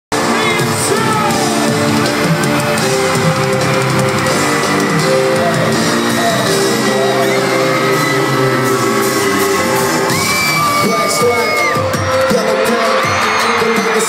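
Loud live hip-hop concert music through an arena sound system, with held chords and the crowd yelling, as heard from among the audience.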